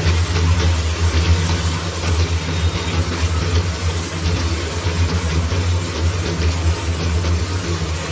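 Spice masala frying and being stirred with a steel spatula in a steel kadai, a steady sizzle over a constant low machine hum.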